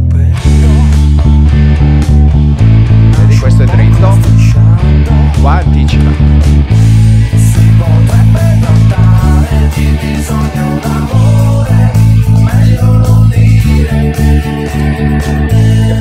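Electric bass guitar, played with the fingers, over a band recording with drums. The bass line alternates between D and A, holding low notes that change every couple of seconds, with quick repeated and anticipated notes in between.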